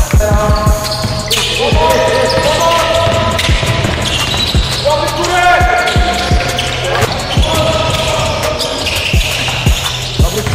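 A basketball bouncing on a hardwood gym floor during live play, many short knocks at an uneven pace, with short high squeaks of players' shoes on the court in between.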